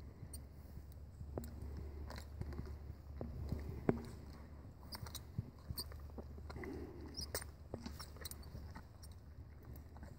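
A horse mouthing and chewing on a bit just put in its mouth, with scattered light clicks and clinks of the bit and bridle hardware. One sharper click comes about four seconds in.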